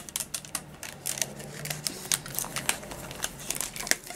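Irregular crinkles and small clicks of a clear plastic sleeve being handled around a rolled-up diamond-painting canvas as a thin band is put around it.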